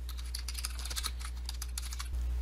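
Computer keyboard being typed on, a quick run of keystrokes as a short name is entered, over a low steady hum.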